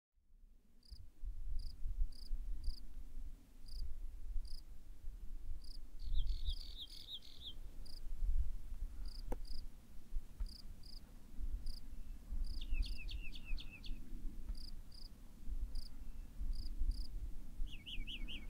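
Outdoor wildlife ambience fading in: short high chirps repeating every half second or so, and three times a bird's quick run of short descending notes, about six seconds in, about thirteen seconds in and at the end, over a low steady rumble.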